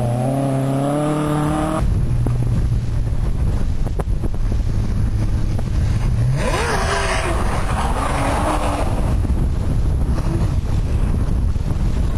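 A rally car's engine coming down a gravel stage, its note falling as it slows, cut off about two seconds in. Then a car's engine running at a distance under wind rumbling on the microphone, with a hissier spell in the middle.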